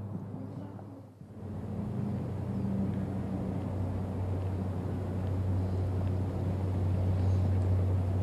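Steady outdoor background noise with a constant low hum, dipping briefly about a second in and then holding steady.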